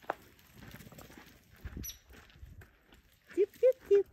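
Footsteps on a dirt and pine-needle trail. Near the end come three short, high calls that rise and fall in pitch, from a voice.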